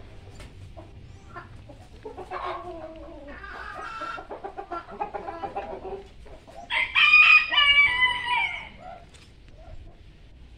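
Backyard chickens: hens clucking for a few seconds, then a rooster crowing once, a long call about seven seconds in that is the loudest sound.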